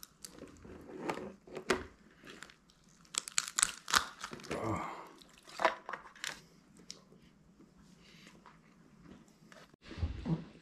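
Shell of a whole steamed lobster being cracked and torn apart by hand: an irregular run of sharp cracks and crunches, densest about three to four seconds in, thinning to faint crackles in the second half.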